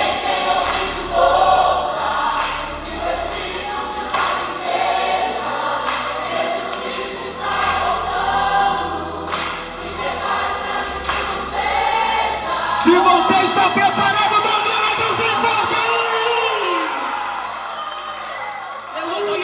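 A congregation singing a Brazilian gospel song together with a live worship band, many voices at once, with hands clapping along.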